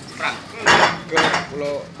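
A few short clattering, clinking noises, the loudest about two-thirds of a second in, followed by a brief voice near the end.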